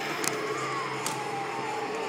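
Animatronic Halloween prop running: a steady mechanical hum with a higher tone that slowly falls in pitch, and a couple of light clicks.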